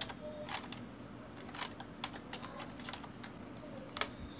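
Typing on a computer keyboard: irregular keystroke clicks, a few a second.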